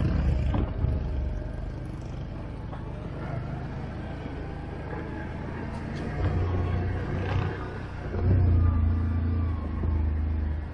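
Quad bike (ATV) engine running steadily under the rider, heard from the onboard camera, with the throttle opening up briefly about six seconds in and again more strongly about eight seconds in.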